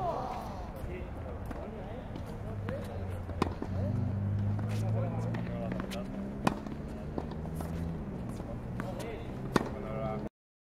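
Tennis racket striking the ball three times, about three seconds apart, each a sharp pop, with fainter ticks of the ball bouncing on the court in between.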